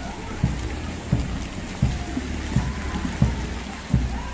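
Steady rain falling on a wet street, with a dull low thump about every 0.7 s, the footsteps of the person walking with the camera.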